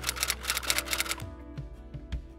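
Typewriter key-clack sound effect, a quick run of clicks that stops a little over a second in, under soft background music.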